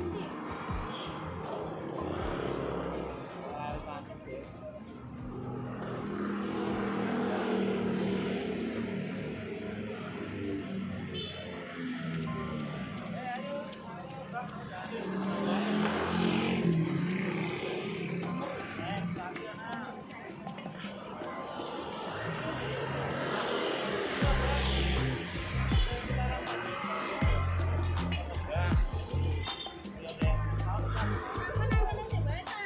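Busy street-market ambience: music playing, indistinct voices, and motorbike engines passing on the road. The sound grows louder and heavier in the last few seconds.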